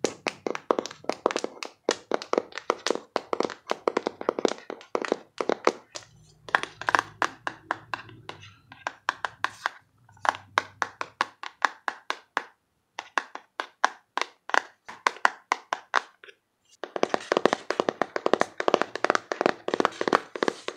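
Fingernails tapping rapidly on a small cardboard box, in quick runs of sharp taps with short pauses about twelve and sixteen seconds in, then a faster, denser flurry of taps near the end.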